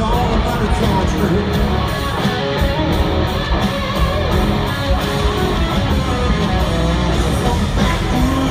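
Live country-rock band playing loud through an arena PA, an instrumental stretch carried by electric guitars over drums and bass.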